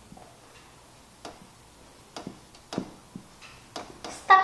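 Marker pen tapping and clicking against a whiteboard while a word is written, about seven short, sharp taps spread irregularly over the last three seconds.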